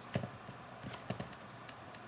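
A few light taps and knocks, two near the start and a cluster of three around a second in, from hands handling the electric guitar just after the playing stops, over a quiet room.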